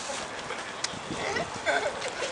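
Outdoor crowd of spectators talking, many voices overlapping, louder toward the end, with one sharp click just under a second in.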